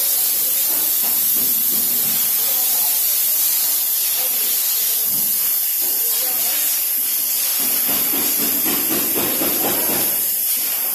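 A steady, high-pitched hiss that runs without a break, with faint voices underneath.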